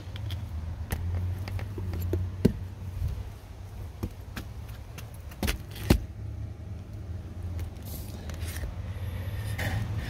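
Low steady rumble with scattered sharp clicks and knocks, the loudest about two and a half and six seconds in, typical of handling noise while moving about.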